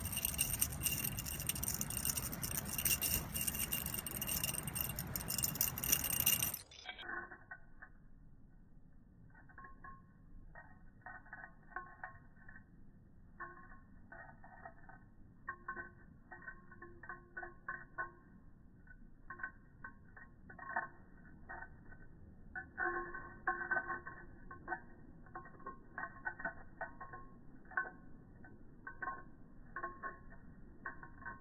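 Metal bead chain running rapidly out of a glass jar, a dense, steady rattle and clink of beads against the glass and each other. About six and a half seconds in, the sound abruptly turns much fainter and lower as slowed-down playback, with scattered clinks and short ringing tones.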